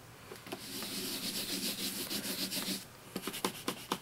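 A dry rubbing sound during hand stamping, lasting about two seconds, followed by a few light clicks near the end.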